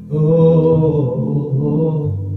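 A man singing a long wordless held note, chant-like, over slow sustained chords from two electronic keyboards.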